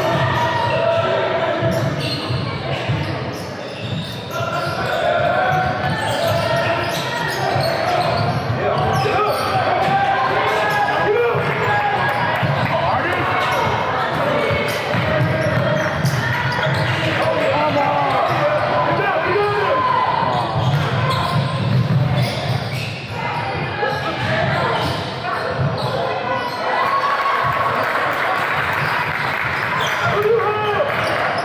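Basketball being dribbled on a hardwood gym floor during play, with voices calling out, all echoing in a large gymnasium.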